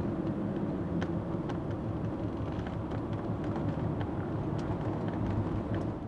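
Steady low rumble of outdoor background noise, like distant traffic, with a few faint clicks.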